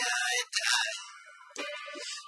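Solo piano accompanying a song: a sung note ends about half a second in, then piano chords ring and fade, and new notes are played near the end.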